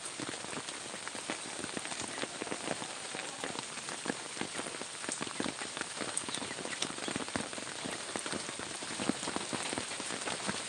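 Steady rain falling on wet ground, with many separate drops ticking close by.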